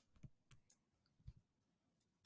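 Near silence with a few faint clicks of a stylus tapping and writing on a touchscreen.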